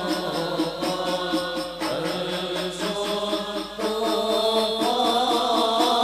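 A group of men chanting an Islamic devotional qasidah together into microphones: a continuous sung melody in unison.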